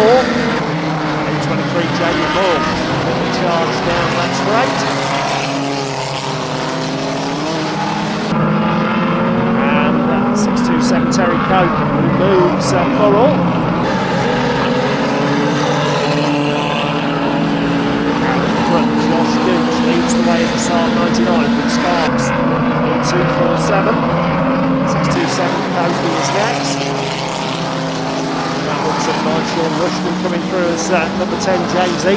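A pack of pre-1975 classic banger race cars running together, several engines revving up and down at once with scattered sharp knocks.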